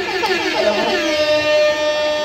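A performer singing into a microphone through a PA: a few sliding vocal runs, then one long held note from just under a second in.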